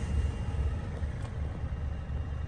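Low, uneven rumble with no speech.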